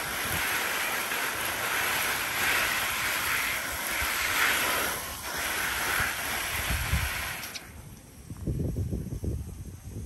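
Garden hose spray nozzle showering water onto a potted philodendron's leaves: a steady hiss of spray that cuts off suddenly a couple of seconds before the end, followed by a few low rumbles.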